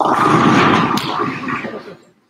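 Bowling pins crashing as two balls strike them on neighbouring lanes, starting suddenly and clattering for about a second and a half, mixed with excited shouting.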